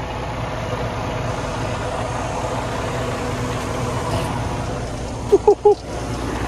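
Semi-truck diesel engine idling steadily.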